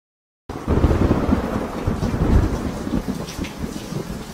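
Thunderstorm sound effect: a rumble of thunder over rain, starting suddenly about half a second in, loudest in the first two seconds, then easing off.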